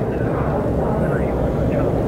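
Steady low background rumble of room noise, with faint, indistinct speech in the background.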